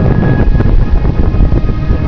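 Wind buffeting the camera microphone: a loud, uneven low rumble.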